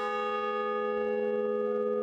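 A large bronze bell hung in a frame ringing after being struck once, its several tones held steady without fading.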